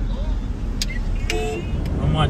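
Low, steady road rumble inside a moving car's cabin, with a few light clicks and a short flat tone about one and a half seconds in.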